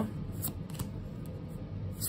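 Stiff board-game cards being flipped through by hand, their edges giving a few short flicks, one about half a second in and another at the end.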